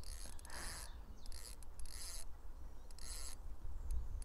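Fishing reel's drag buzzing in short bursts as a hooked carp pulls line off the spool, over low wind rumble on the microphone.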